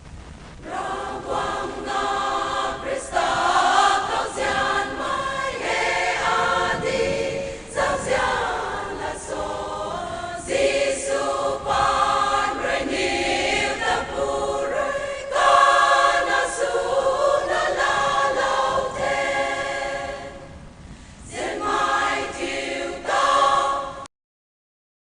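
Women's choir singing together in phrases, with short pauses for breath between them. The singing begins about a second in.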